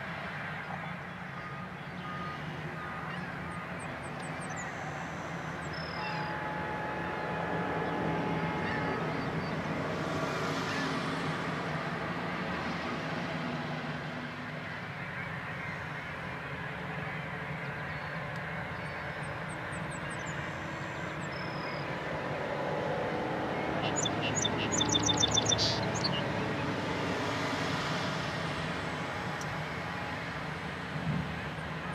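Heavy diesel engines of wheel loaders and switcher locomotives running in a steady low drone that swells and eases as the loaders work. About 24 seconds in, a quick series of sharp high-pitched pulses sounds over it for about two seconds.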